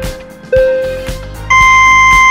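Quiz countdown timer beeping over background music: one short beep about half a second in, then a louder, higher, held tone starting about one and a half seconds in as the count reaches zero, signalling time's up.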